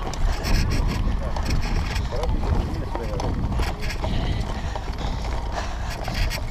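Wind buffeting a handlebar-mounted action camera's microphone over the rumble of a mountain bike rolling on a grass and dirt track, with scattered rattling clicks from the bike.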